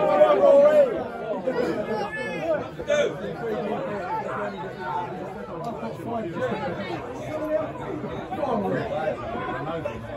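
Football spectators chattering and calling out, several voices overlapping, with one louder voice in the first second.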